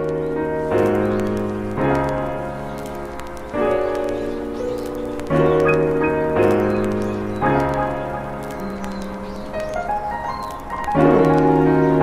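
Background music: sustained chords that change every second or two, with a rising run of notes near the end.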